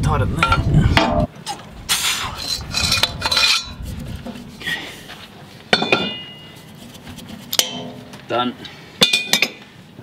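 A wrench turning and tapping bolts on a steel rudder bearing flange: scattered metal clinks, a few of them ringing, with a low rumble in the first second or so.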